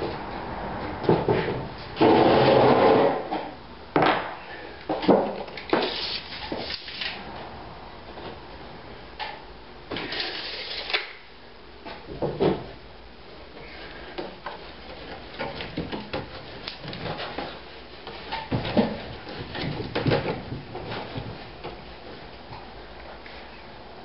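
Wooden framing pieces being handled and fitted by hand: a series of knocks, bumps and rubbing scrapes, with one longer, louder scrape about two seconds in.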